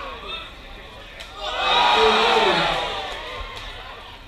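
Crowd cheering in a loud swell that rises about a second and a half in and dies away after a second and a half, with individual voices shouting within it.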